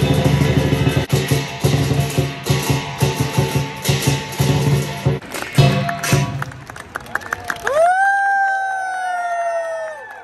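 Lion dance performance music: dense, rhythmic drumming and percussion. About eight seconds in, the drumming stops and a single long note slides up and then slowly falls.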